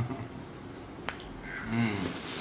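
A single sharp click about halfway through, then a brief vocal sound near the end.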